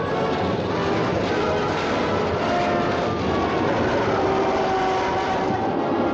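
Steady drone of a twin-engine propeller aircraft in flight, mixed with a rushing noise.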